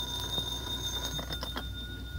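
Telephone bell ringing as a radio sound effect, with a few clicks about a second and a half in as the receiver is picked up.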